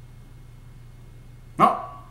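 A single short, sharp vocal sound near the end, loud against a faint steady hum.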